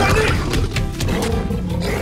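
Soundtrack-style animal roar for a giant golden ape spirit, over dramatic music.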